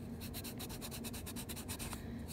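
Pencil eraser rubbing on paper in rapid, even back-and-forth strokes, erasing pencil guide lines around hand-inked lettering.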